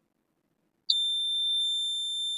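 Digital multimeter's continuity buzzer sounding one steady high-pitched beep, starting suddenly about a second in as the probes touch a capacitor on the laptop motherboard's main power rail. The beep means the meter reads about 1.4 ohms: the main power rail is shorted.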